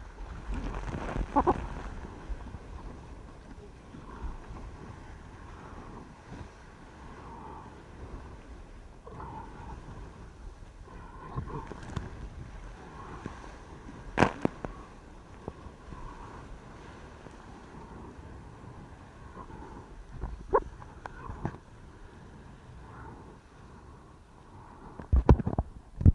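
Sea water rushing and splashing around a surfboard, picked up close by a camera on the board, with a few sharp splashes or knocks on it about a second in, midway, at about twenty seconds and near the end.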